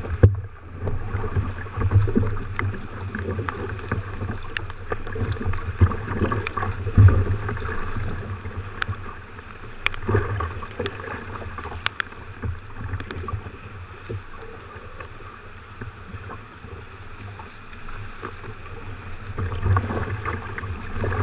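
Sea water sloshing and splashing against a sea kayak's hull as it moves through choppy swell, with scattered sharp splashes and a low rumble on the microphone. It is busiest in the first half and calms for a few seconds before picking up again near the end.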